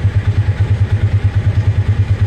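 Polaris side-by-side engine idling, a steady low throb of about six pulses a second, heard from inside the cab.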